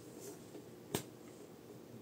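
Faint room noise with one sharp, short click about a second in.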